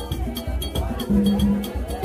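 Haitian Vodou ceremonial music: drumming with a steady beat of about four percussion strikes a second, under a crowd of worshippers singing. A low held note sounds for about half a second, just after the first second.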